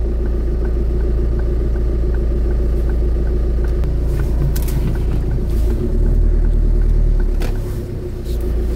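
Car engine heard from inside the cabin, idling with a steady low hum, then revving up about six seconds in as the car pulls away. A light, regular ticking runs through the first half: the turn signal, set for a left turn.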